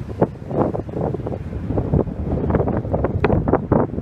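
Wind buffeting the phone's microphone: an uneven low rumble with many short, irregular gusts.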